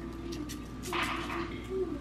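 Garlic powder shaken from a plastic spice shaker over raw chicken breasts: faint ticks and a short hiss about a second in. A faint low hum runs underneath.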